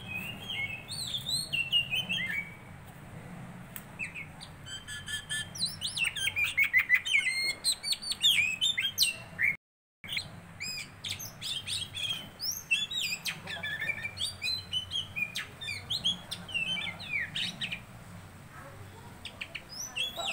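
Songbirds chirping and calling, many quick high chirps, slurred whistles and a rapid trill following one another throughout. The sound cuts out completely for about half a second near the middle.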